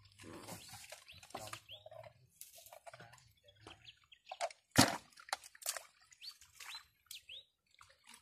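Irregular wet splashing and slapping of water as fish are handled in the net and basket, with one sharp knock about five seconds in. A few short high chirps, like a bird's, come over it.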